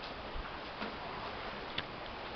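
Steady rush of stream water in a rocky gorge, with a few light clicks, the sharpest near the end.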